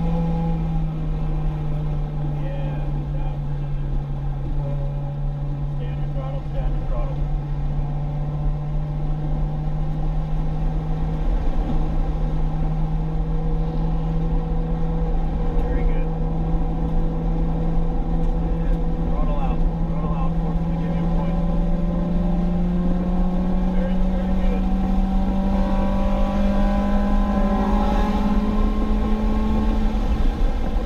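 Acura RSX Type-S's K20 four-cylinder engine pulling hard at high revs under steady throttle, heard from inside the cabin. Its pitch climbs slowly and evenly as the car gains speed.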